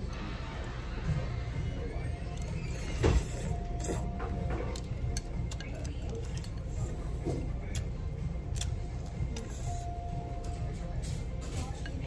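Restaurant room tone: a steady low hum with quiet background music. Over it come a few light clicks of chopsticks and a ceramic spoon against a soup bowl, the sharpest about three seconds in.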